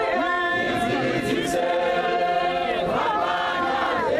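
A large congregation singing together in chorus, unaccompanied, with many voices holding long sustained notes and sliding between them.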